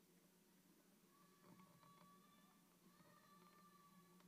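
Near silence: a faint steady low hum with a few faint ticks and a faint held tone in the middle.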